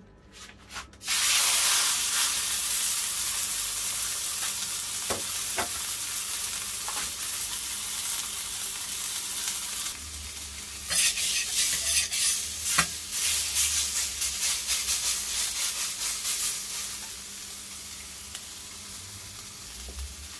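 Marinated beef steak sizzling on a hot flat-top steel griddle, starting about a second in as it is laid on the metal. From about ten seconds in, a metal spatula scrapes and taps on the griddle around the steak, and the sizzle is quieter near the end.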